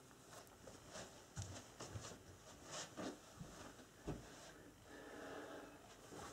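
Faint rustling of a flannel dressing gown and scattered soft clicks as its buttons are done up by hand.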